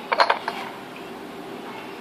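A few quick, light clicks of fingers and spices against a glass serving platter, about a quarter-second in. A steady low background hum follows.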